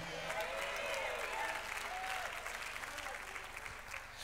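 Congregation applauding, with a few faint voices calling out; it slowly dies down toward the end.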